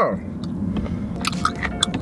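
A person chewing a tough, rubbery fried chicken gizzard close to the microphone, with a few short wet clicks and crunches as he works at it, just after a pained 'oh'.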